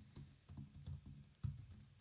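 Faint typing on a computer keyboard: an irregular run of light key clicks as a search is typed in.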